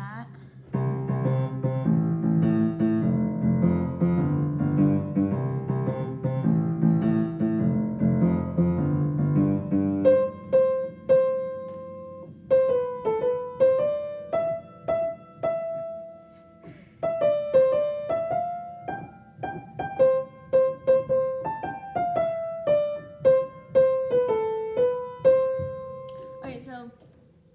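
Piano being played: for about the first ten seconds, low repeated chords, then a single-note melody in the upper register with struck notes ringing out and short pauses between phrases.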